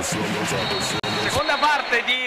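TV sports show's theme jingle: electronic music with a steady beat and a high held tone, breaking off about a second and a half in as a voice begins.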